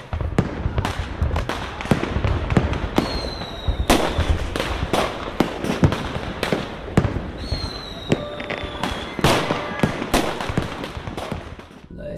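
Fireworks going off: a dense run of sharp bangs and crackles, with two whistles falling slightly in pitch, one about three seconds in and one about seven seconds in.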